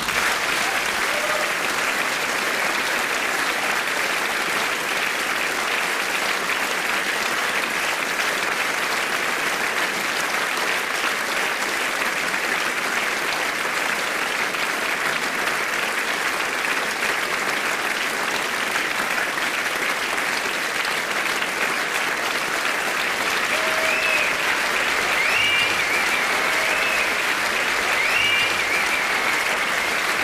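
A large theatre audience applauding steadily for a long time, with a few whistles near the end.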